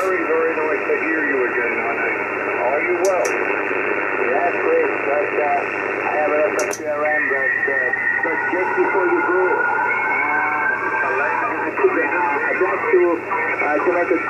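A voice on an 80-metre single-sideband amateur radio net heard through an HF transceiver's speaker: narrow, band-limited speech over a steady hiss of band noise. Two sharp clicks, about three seconds in and just before seven seconds.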